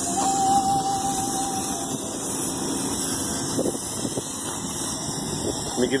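Street traffic noise from passing trucks and cars, a steady rush of noise with a thin steady whine lasting about two seconds near the start.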